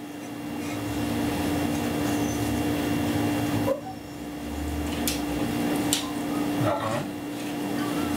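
Steady indoor room hum and hiss with a low steady tone, growing louder over the first second. A few faint clicks come between about five and seven seconds in.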